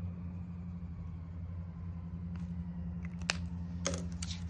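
A steady low motor hum, with two light clicks near the end as a marker is capped and set down on the table.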